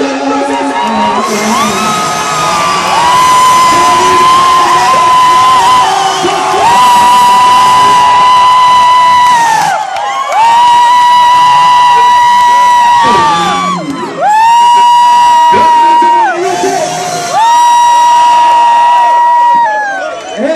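Live concert music: a voice holds a run of long high notes, each about two to three seconds with a short scoop up into it, over a cheering, whooping crowd.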